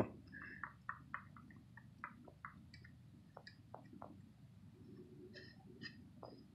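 Faint, irregular light clicks and small squeaks as a hand rocks the sloppy water pump pulley and shaft on a Kubota G4200's engine, which is not running. The play in the pump is what the owner suspects is a worn bearing.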